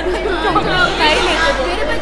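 Chatter: several voices talking over one another in a cafeteria.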